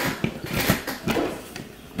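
Light clicks and knocks as a four-inch plastic recessed LED pot light with metal spring clips is handled and pushed up against the ceiling hole, its clips being pulled back.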